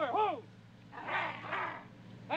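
A drill sergeant's barked command trails off, then about a second in comes a short, rough, breathy vocal burst from the men, lasting under a second. A steady low hum from the old film soundtrack runs underneath.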